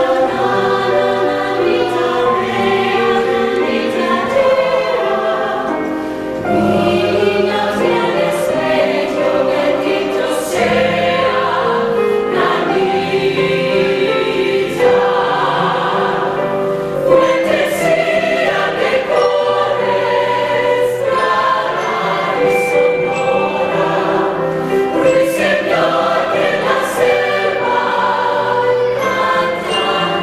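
Mixed choir of men's and women's voices singing in harmony, with sustained low notes under the voices and piano accompaniment, in phrases that rise and fall in loudness.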